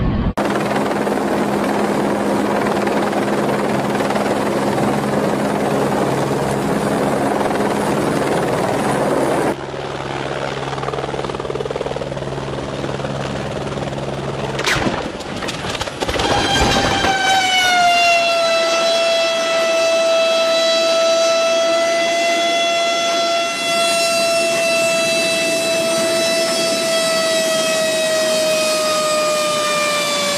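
Helicopter rotor and engine noise, then the noise of a helicopter crashing about halfway through. After the crash, the downed helicopter's turbine whines on and falls slowly in pitch as it winds down.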